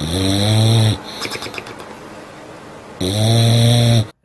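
English bulldog snoring in its sleep: two loud snores, each about a second long and about three seconds apart, with quieter breathing between.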